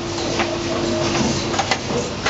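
Demtec 2016EVO potting machine and Urbinati RW8 transplanter running as one automatic potting line: a steady mechanical hum with sharp clicks and clacks from the pot and plug-tray conveyors, two louder ones about half a second in and near the end.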